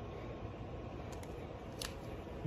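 Quiet steady room noise with one faint click near the end.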